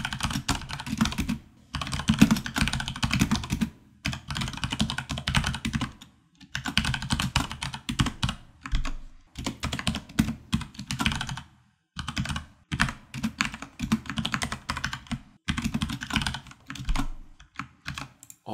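Fast typing on a computer keyboard, in bursts of a few seconds with short pauses between them.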